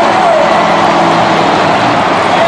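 Monster truck engines running steadily, loud under a continuous din from the stadium crowd.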